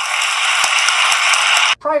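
Large audience applauding, a loud, even clatter of many hands clapping that cuts off abruptly near the end.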